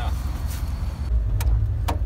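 Low steady rumble of a camper van's engine and running gear heard from inside the cab, with two short sharp clicks in the second half.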